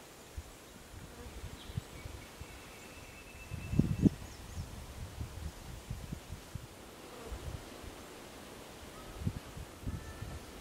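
Quiet outdoor bush ambience: an uneven low rumble with scattered soft thumps and a louder swell about four seconds in, and a few faint, thin high chirps and a short high tone early on.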